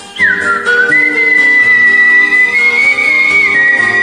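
A man whistling a Hindi film-song melody over a karaoke backing track. The whistle comes in just after the start with a quick downward slide. It then rises to a long held high note that steps up briefly and falls back near the end.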